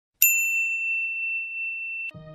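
A single bright bell-like ding, struck about a quarter second in. Its higher overtones fade quickly, while the main tone rings on and slowly dies away.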